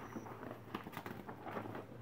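Faint rustling and light taps of paper and plastic packaging being handled, a scatter of small irregular clicks.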